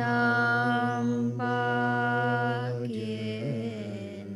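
Tibetan Buddhist prayer chanted by a low male voice in long, steady held notes, three phrases in a row with short breaks between them, trailing off slightly near the end.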